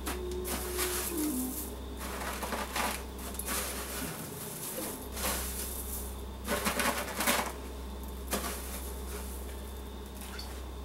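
Crushed cornflake crumbs crunching and crackling in irregular bursts as a hand presses an egg-coated fish fillet into them in a metal pan.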